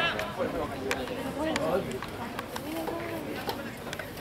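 Scattered calling and talking voices carrying across an open sports field, fainter than the shout just before, with a few faint sharp clicks.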